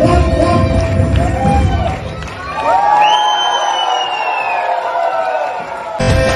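Bollywood dance music with a steady beat stops about two seconds in, and the audience then cheers, with long high-pitched shouts and whoops from children.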